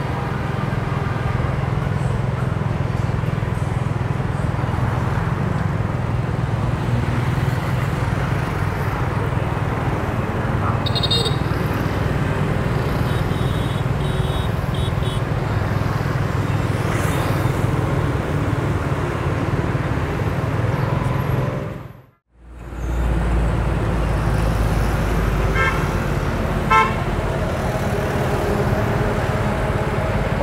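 Busy street traffic heard from a moving motorbike: a steady engine hum with a few short horn toots from vehicles in the traffic. The sound drops out briefly about two-thirds of the way through.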